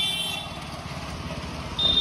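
Street traffic with a steady low engine rumble, cut by two short high-pitched vehicle beeps: one at the very start and one near the end.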